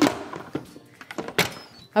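Instant Pot lid being set on the pot and twisted to lock: a few clunks and clicks, the loudest right at the start and about one and a half seconds in.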